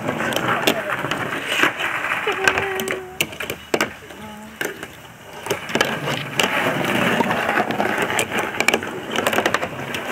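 A fingerboard clicking and clacking against a tabletop and its small obstacles in quick irregular taps, with children's voices in the background. Quieter for a couple of seconds in the middle.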